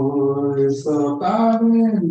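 A man singing a chant-like hymn alone in long held notes, stepping up to a higher note about a second in.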